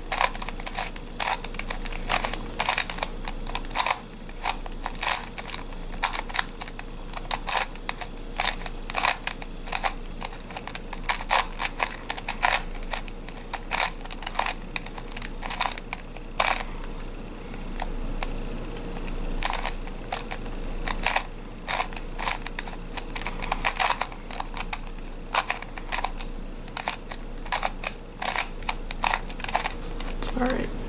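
Plastic face-turning octahedron twisty puzzle being turned over and over, its layers clicking and clattering in quick, uneven runs, with a short lull of about two seconds past the middle. This is the repeated r U r' U' sequence that swaps two centre pieces.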